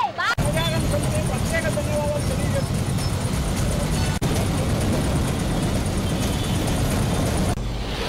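Loud, steady low rumble of outdoor background noise with faint voices in it during the first couple of seconds. Near the end it gives way to a short whooshing sound.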